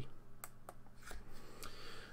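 Hands handling a small electronics board mounted on a wooden plank: a few faint, short clicks and light rustling.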